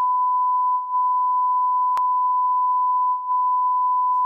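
A steady 1 kHz censor bleep: one pure tone held throughout, with a short click about two seconds in.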